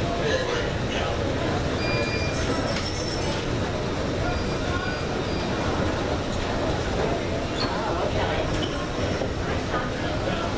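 Steady rumbling ambience of a busy airport terminal, with murmured voices and wheeled suitcases rolling past.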